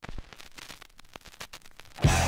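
Vinyl surface noise from a 45 rpm single between tracks: faint hiss with many irregular crackles and pops from the groove.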